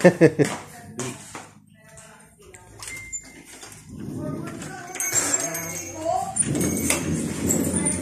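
Indistinct voices in a house, with a wooden interior door unlatched by its lever handle and swung open in the second half.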